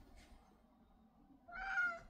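A black house cat, scared to jump down from a high cat-tower shelf, meows once, briefly, near the end.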